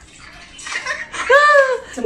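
Water splashing in an inflatable pool. About a second and a half in, a voice calls out one drawn-out vowel that rises and falls.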